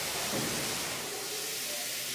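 Steady hiss of water spraying from a garden hose nozzle onto a clay-brick wall. The absorbent wall is being pre-wetted so the lime plaster has moisture to set.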